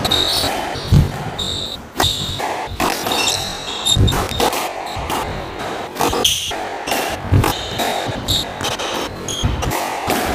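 Squash rally: the ball striking rackets and the walls every second or two, with short high squeaks of court shoes on the wooden floor in between.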